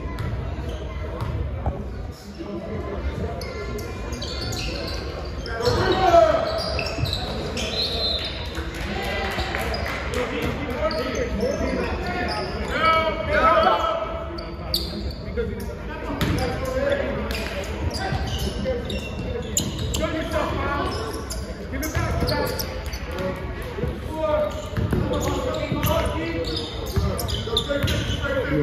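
Basketball being dribbled and bounced on a gym floor during a game, with players and spectators shouting, echoing in a large hall.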